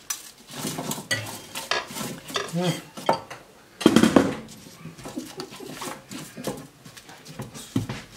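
Raw vegetable chunks dropped and set down by hand on a metal baking tray: irregular knocks and clatters, the loudest about four seconds in.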